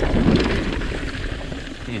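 Cannondale Jekyll mountain bike ridden fast over a wooden plank boardwalk and back onto dirt singletrack: tyres drumming over the boards, with the bike rattling and wind noise on the microphone.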